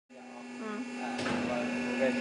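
A vacuum mixing tank's electric drive running with a steady motor hum that grows louder, a broader rushing noise joining a little over a second in as the agitator churns the product.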